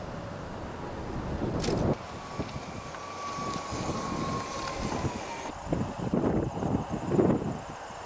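Wind buffeting a camera microphone in irregular low gusts, loudest in the last few seconds. A faint steady whine slowly drops in pitch through the middle.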